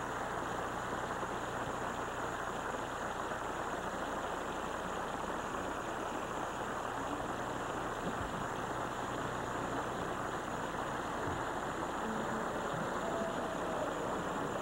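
Large studio audience applauding steadily, many hands clapping at once.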